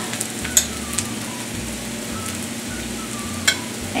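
Potatoes and onions frying in oil in a cast iron skillet: a steady sizzling hiss, with a few sharp clicks.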